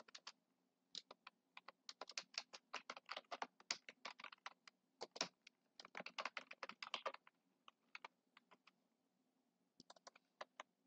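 Computer keyboard typing: a fast run of keystrokes from about a second in to about seven seconds, then a few scattered key presses.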